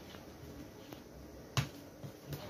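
A metal spoon stirring a thin mixture of rice flour, cornstarch and milk in a plastic bowl to dissolve the lumps, with a sharp click of the spoon against the bowl about one and a half seconds in and a fainter one a little before.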